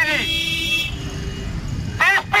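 A vehicle horn sounds once, a steady high-pitched toot lasting under a second, over a low steady rumble of street traffic.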